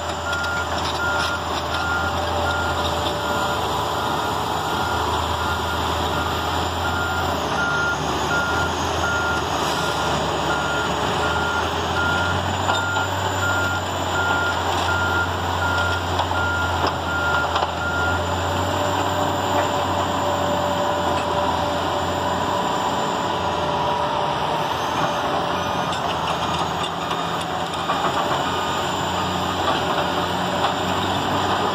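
Backup alarm beeping at a steady, even pace on heavy earthmoving machinery, over the steady low running of diesel engines on bulldozers, an excavator and dump trucks. The beeping stops about 18 seconds in, leaving the engines running.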